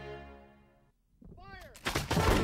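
Soft music fades out over the first second. About a second in, battle sound effects begin: a few whistles that rise and fall in pitch, then a sudden loud burst of gunfire near the end.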